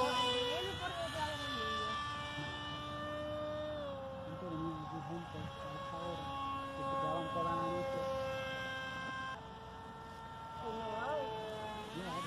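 Electric RC plane in flight: a 2200 kV brushless motor spinning a 5x5 propeller makes a steady whine of several pitches. The whine steps up in pitch about a second in, falls back around four seconds and drops again, quieter, near the end as the throttle changes.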